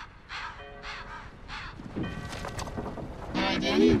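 Harsh bird squawks repeated about twice a second, from an animated film soundtrack chopped up with glitch effects, followed near the end by a voice.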